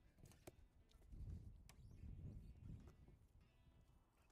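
Near silence, with faint low knocks and a couple of light clicks as a roll of EPDM rubber roofing film is rolled out over wooden roof boards.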